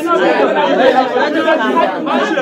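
Several people talking over one another in a room: overlapping, indistinct speech and chatter.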